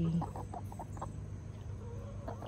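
A hen clucking softly: a few short clucks in the first second, then quiet.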